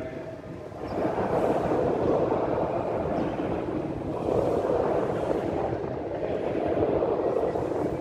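A congregation reading a psalm verse aloud together in a responsive reading. Many voices blend into one even murmur from about a second in.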